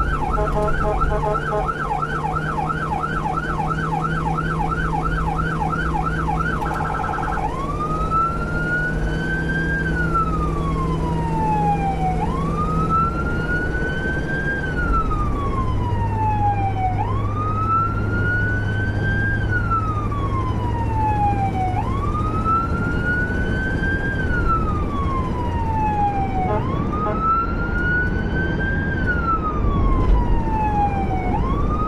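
Electronic emergency-vehicle siren on a responding unit: a fast yelp of about three sweeps a second, switching about seven seconds in to a slow wail that climbs quickly and falls away about every five seconds. Steady engine and road noise runs underneath.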